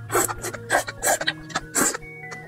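A person slurping noodles, with four loud slurps drawing the strands into the mouth. Background music plays faintly beneath.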